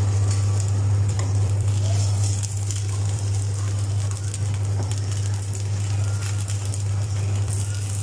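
Vegetable chilla batter frying in oil on a non-stick tawa, a soft sizzle with light scraping as a wooden spatula is worked under its edge. A strong steady low hum runs underneath.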